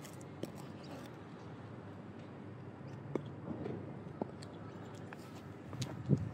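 Pleaser Adore-701 platform mules with 7-inch heels clicking on concrete: a few separate heel strikes, irregularly spaced, over a steady outdoor background hiss.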